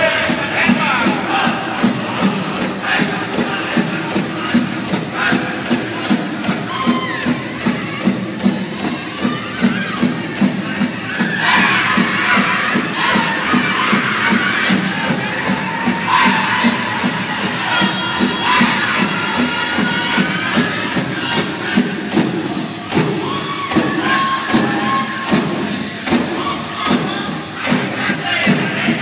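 Powwow drum group playing a Grand Entry song: several drummers strike a large powwow drum together in a steady, even beat under high, bending singing. The crowd cheers over it, swelling a little before the middle and again after it.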